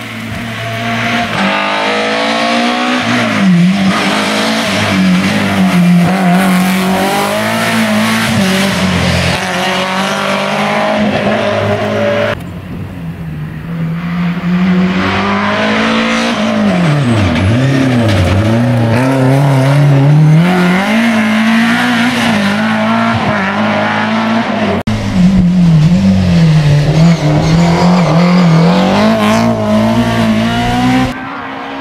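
BMW E30 M3 rally car's four-cylinder engine driven hard on a stage, its pitch climbing and dropping repeatedly through gear changes, braking and acceleration out of corners. The sound breaks off and starts anew twice, as separate passes follow one another.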